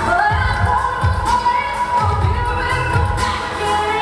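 Live pop band playing: a singer's voice holding and gliding through a melody over bass and drums, with a beat landing about once a second.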